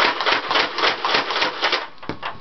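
Nerf Vulcan EBF-25 belt-fed dart blaster firing on full automatic: a rapid, even run of mechanical clacks, several a second, that stops just before the end.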